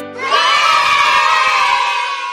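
A group of children cheering and shouting together, a single burst that starts just after the beginning and slowly fades.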